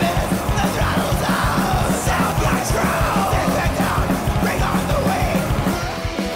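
Loud punk-metal song: yelled vocals over distorted guitar, bass and driving drums.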